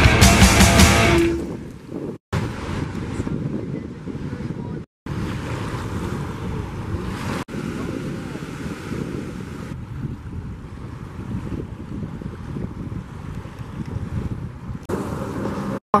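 Punk rock music fades out about a second in, giving way to the steady rush of breaking ocean surf with wind buffeting the microphone, broken by a few short dropouts.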